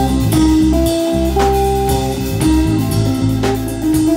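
Guitar and drum kit playing together in a live band jam: held guitar notes over a steady drum beat.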